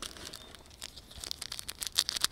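Crinkling and tearing of a small wrapper being handled, a run of quick crackles that grows denser near the end.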